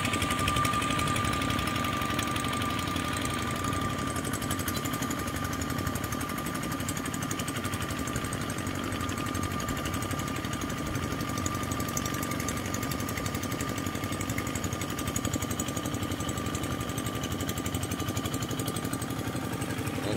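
Single-cylinder diesel engine of a two-wheel walking tractor running steadily under load as it drags a levelling board through flooded paddy mud, a fast, even beat with a steady high whine over it.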